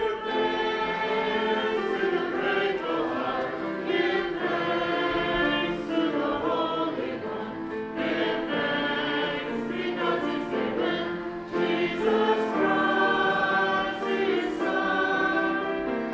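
Small church choir singing a hymn in sustained, steady lines.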